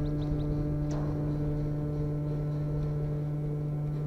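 A steady, loud machine hum with a stack of overtones, holding one pitch throughout. A few faint high chirps come near the start.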